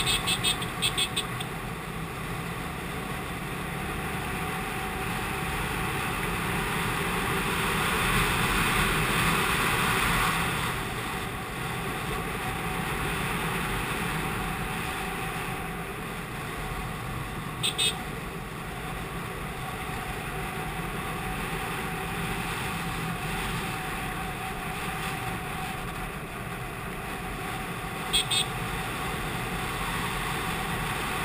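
A TVS Apache RTR 180's single-cylinder four-stroke engine running while the motorcycle rides along, heard through steady wind noise on the microphone. The noise swells for a couple of seconds near the end of the first third. Brief high chirps sound twice in the second half.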